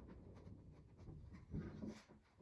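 Faint scratchy handling sounds of a squeeze bottle of wood glue being run along a wooden door frame, then a few soft knocks near the end as the bottle is set down on the wood.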